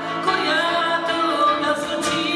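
A woman singing live into a microphone, accompanied by an acoustic guitar.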